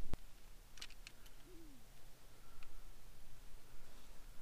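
Quiet handling noises as a fish is hooked onto a handheld digital scale: a sharp click at the start, a few light clicks about a second in and another small click later. A faint low steady hum runs beneath.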